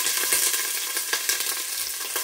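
Mojarra fish pieces frying in hot oil: a steady sizzle with scattered crackles and pops as the oil spatters around the fish just laid in to brown.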